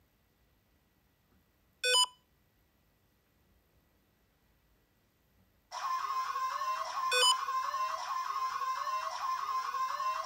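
A single short electronic beep about two seconds in. From about six seconds in, a steady high electronic tone with rising sweeps repeating a little faster than once a second, and one more short beep partway through.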